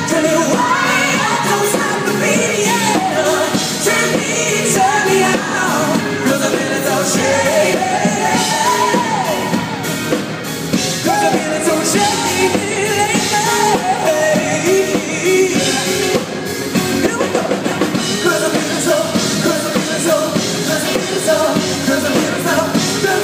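Live pop-rock band with singing, recorded from the audience: a lead vocal line gliding up and down in long, drawn-out notes over the full band.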